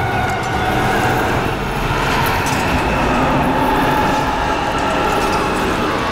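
Film battle soundtrack: a loud, steady, dense din with drawn-out wailing tones laid over it.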